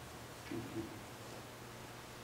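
Faint room tone of a hall with a steady low hum, and a brief faint sound about half a second in.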